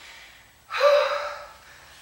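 A woman's loud, gasping breath out, once, about three-quarters of a second in: she is winded from exertion.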